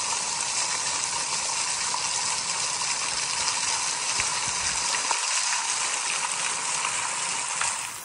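Waterfall running steadily down a cliff face and splashing onto the rocks and stones close by, a continuous rush of falling water.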